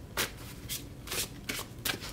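A deck of oracle cards being shuffled and handled by hand: about five short papery flicks and snaps of card stock.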